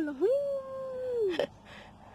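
A single high, held whine lasting about a second that falls off at the end, followed by a sharp click.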